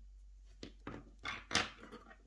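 Hands handling crochet lace and thread: a few soft clicks and rustles, then a sharp tap about one and a half seconds in, the loudest sound, as a steel crochet hook is set down on a wooden table.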